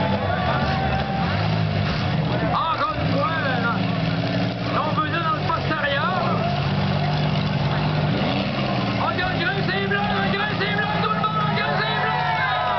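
Demolition derby cars' V6 engines running and revving in the arena, their pitch rising and falling as the cars manoeuvre. Spectators' voices shout and talk close by throughout.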